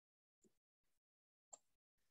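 Near silence, broken by two faint brief ticks about a second apart.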